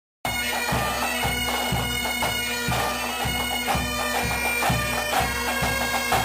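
Bagpipe music: a melody played over a steady drone, with a drum beating about twice a second, starting suddenly just after the opening.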